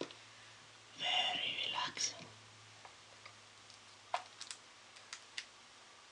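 Close-miked sounds of eating honeycomb from a plastic clamshell: a loud crackly burst lasting about a second starts about a second in, followed by scattered sharp sticky clicks.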